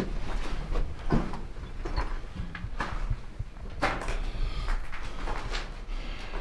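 Footsteps on a gravelly, debris-strewn mine floor: a few irregular crunching steps about a second apart, over a low rumble.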